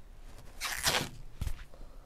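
Plastic cling film being pulled and stretched over a wooden bowl, crinkling in a rustling burst just over half a second in, then once more briefly.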